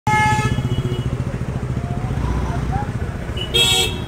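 Street traffic with a motorbike engine running close by. A vehicle horn gives a short honk at the very start and another just before the end.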